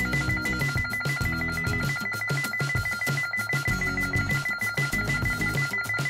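Honeywell Lyric security controller sounding its exit-delay beeps after being armed in away mode: a rapid, steady series of high beeps throughout, over background music.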